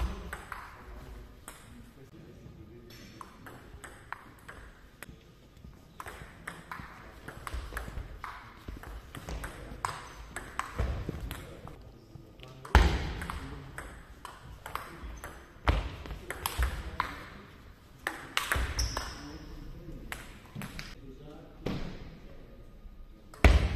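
Table tennis ball clicking sharply off rackets and table in rallies, echoing in a large hall, with a few heavy thuds and voices in between.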